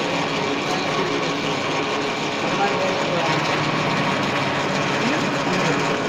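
Metal-turning lathe running steadily, giving an even mechanical hum and whir from its motor and gearing.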